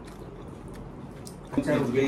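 Faint clicks and small table noises of people eating by hand, then a voice speaking briefly near the end.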